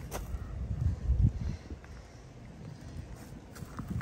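Low thumps and rumble from a handheld camera being moved and handled, loudest in the first second or so, with a sharp click at the very start, then a faint, even outdoor background.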